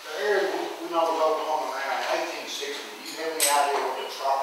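A man speaking, giving a lecture to an audience in a room.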